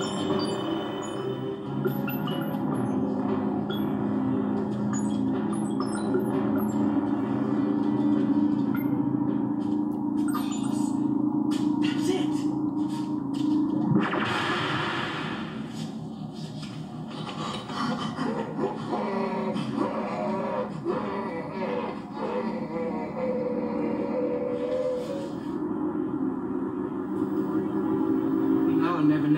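Sci-fi drama soundtrack playing from a television: incidental music of steady sustained tones, broken about halfway by a short, loud hissing blast as an energy flash fills the screen, then wavering tones.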